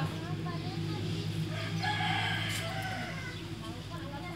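A single drawn-out bird call about halfway through, heard over a steady low hum.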